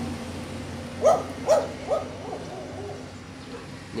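An animal giving three short hooting calls about half a second apart, over a faint steady hum.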